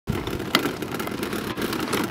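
Child's tricycle with plastic wheels rolling over asphalt as it is pushed: a steady rattling rumble with a couple of sharp clicks.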